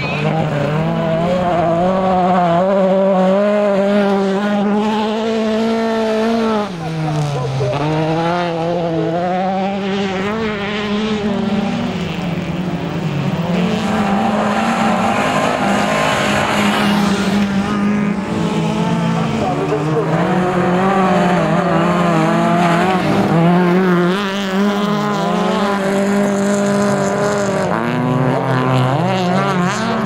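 Race car engines on a dirt autocross track, revving hard, their pitch climbing and falling over and over through gear changes and corners. There is a clear drop in revs and a climb back about seven seconds in.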